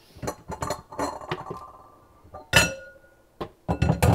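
Mixing bowls and dishes clinking and clattering against each other as they are rummaged through in a lower kitchen cabinet. A quick run of knocks with brief ringing comes first, then one loud clatter about two and a half seconds in, and a few more knocks near the end.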